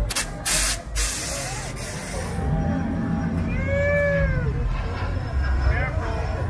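A loud hiss of escaping air for about two seconds, then a car engine running low and steady as it passes, with one rising-and-falling whoop from the crowd about four seconds in.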